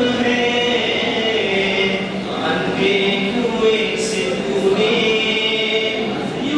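A young man singing a hamd, a devotional poem in praise of God, solo into a microphone without instruments, in long held notes that glide and waver in pitch with brief breaks for breath.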